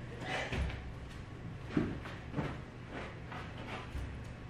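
Heavy, irregular footsteps thudding on a wooden floor as a man walks carrying a person on his back, several separate thumps a second or so apart.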